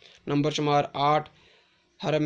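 Speech only: a man narrating, about a second of words followed by a pause.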